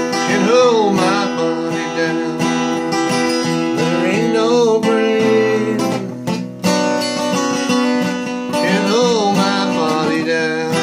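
Steel-string acoustic guitar strummed in a steady rhythm, playing a song in D minor, with a brief break in the strumming about six and a half seconds in. A wordless vocal line rises and falls over it three times.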